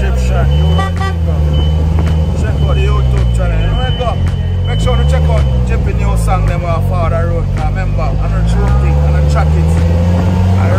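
Engine of an open-top car driving on the road. Its pitch rises and falls several times as it speeds up and slows, with men's voices talking over it.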